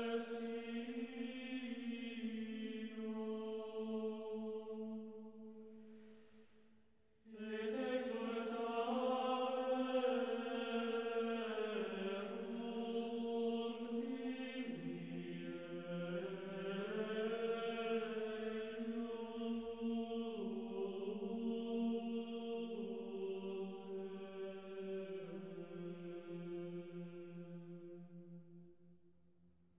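Slow, meditative chant of long held notes that step slowly from one pitch to the next. It fades out about six seconds in, comes back a second later, and fades again at the end.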